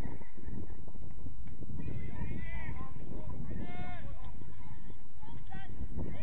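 Wind buffeting the microphone in a steady low rumble, with players' shouts across the pitch, two longer calls about two and four seconds in.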